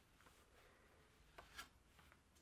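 Near silence, with the faint rustle of fingers and yarn against the cotton warp threads of a rigid heddle loom as pattern yarn is passed through the shed. Two brief, slightly louder rustles come about a second and a half in.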